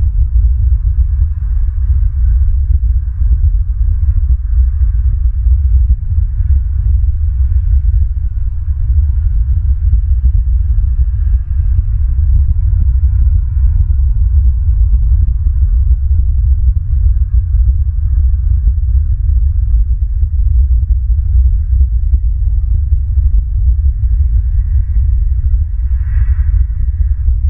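Loud, steady low rumble with a restless, fluttering level, typical of wind buffeting an outdoor camera microphone.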